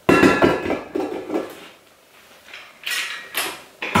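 Stainless steel bowl of a KitchenAid stand mixer clanking against the mixer as it is set back in place, in two groups of metal knocks with a pause between, and a sharp click near the end.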